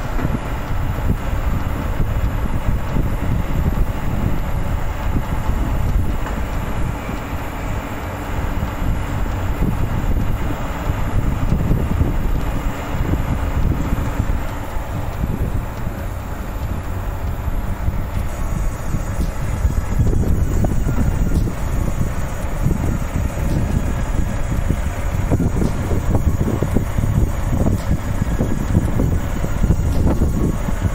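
Rear-loading garbage truck running as it empties a wheeled waste bin into its compactor, a steady low rumble, mixed with wind buffeting the microphone.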